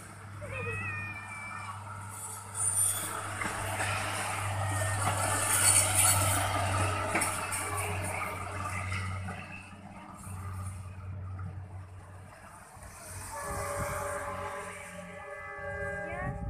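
A small self-propelled rail vehicle passes along the track. It gives a steady low engine hum with wheel-on-rail noise that swells to its loudest about six seconds in, then fades as it moves away.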